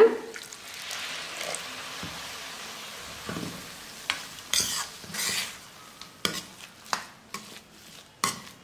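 A steel ladle stirring upma in a stainless-steel kadai. For the first few seconds there is a steady sizzling hiss of the mixture frying in the pan. From about halfway on, the ladle clinks and scrapes against the steel pan several times.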